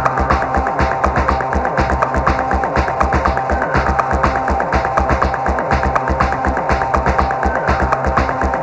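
Live techno set: a steady four-on-the-floor kick drum about twice a second under a sustained bass line and quick ticking hi-hats.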